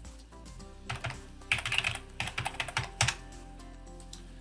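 Typing on a computer keyboard: a quick run of key clicks from about a second in until about three seconds in, over quiet background music.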